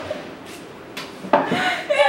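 Women laughing, the laughter breaking out loudly about one and a half seconds in after a quieter start, with a couple of light clicks of tableware in the first second.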